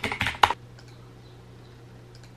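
Quick typing on a computer keyboard, ending about half a second in with one harder keystroke; after that only a faint steady low hum.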